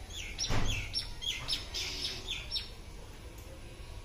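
A bird chirping: a quick run of about eight short, high chirps, each falling in pitch, in the first two and a half seconds. A single knock sounds about half a second in.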